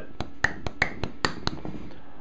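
A quick, uneven run of about eight sharp clicks and taps over a second and a half.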